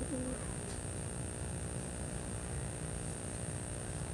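Steady low outdoor rumble at a modest level, with a short pitched sound right at the start.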